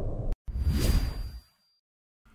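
Whoosh transition sound effects on an animated title card: a swish tailing off, a sharp break, then a second swish with a faint high tone that dies away about a second and a half in.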